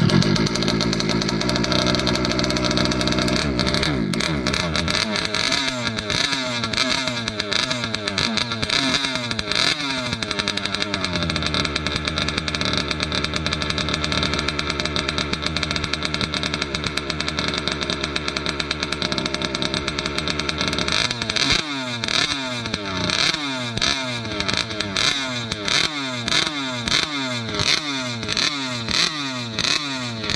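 Two-stroke petrol engine of a Rovan Baja 1/5-scale RC buggy catching at the very start and running fast for a few seconds before settling to a steady idle. From about two-thirds of the way through it is revved in short throttle blips about once a second.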